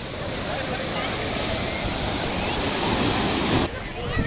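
Sea surf breaking and washing up a sand beach, a steady rushing noise. It cuts off abruptly near the end.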